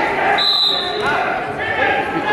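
A referee's whistle blown once, a steady high note lasting about half a second, stopping the action on the wrestling mat, over spectator chatter.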